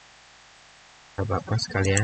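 Steady low background hiss and electrical hum for about a second, then a man's voice speaking briefly.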